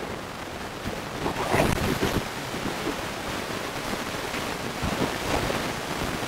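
Steady hiss of a noisy microphone, with a louder, muffled rustle of handling or breath noise about a second and a half in.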